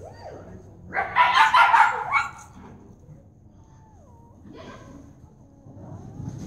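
Dog barking: a quick run of loud barks lasting about a second, then quiet.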